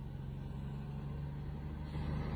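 Steady low hum of a vehicle engine idling, heard from inside the cab.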